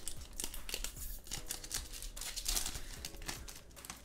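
Foil trading-card booster pack crinkling and tearing as it is ripped open by hand, a dense run of crackles.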